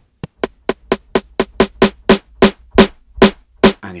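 A sampled kick drum hit from a Latin pop drum loop, triggered over and over from a MIDI keyboard in Logic Pro's Quick Sampler at about four hits a second. The hits grow louder and ring a little longer toward the end as the amplitude envelope is reshaped while it plays.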